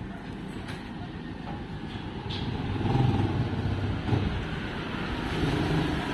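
A motor vehicle running on the street nearby, a low engine hum over steady outdoor noise that swells about halfway through and again near the end.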